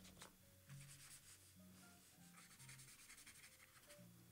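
Faint scratchy rubbing of paint brush bristles across paper, laying down a wash in one long run of strokes after a couple of light taps near the start. Soft background music plays underneath.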